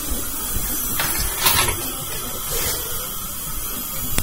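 Steady hiss with scattered rustles and a few soft knocks, from a camera being carried and rubbing against clothing.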